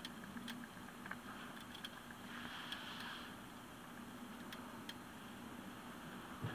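Faint outdoor background with scattered light ticks and a soft hiss that swells and fades in the middle.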